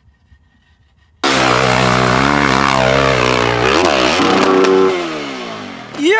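Yamaha YZ450F dirt bike's single-cylinder four-stroke engine cutting in suddenly about a second in and revving hard, its pitch wavering up and down; over the last second the revs fall away.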